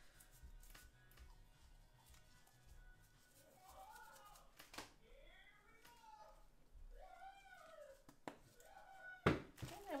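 Several faint calls that rise and fall, each about half a second long, sound over a quiet room, like an animal whining or mewing. Light clicks come now and then, and a sharp knock sounds near the end.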